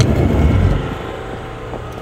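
Stunt scooter's small wheels rolling over rough asphalt: a loud low rumble in the first second that eases into a steady roll.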